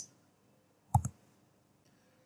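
A computer mouse clicking once about a second in, heard as two quick strokes close together; otherwise near silence.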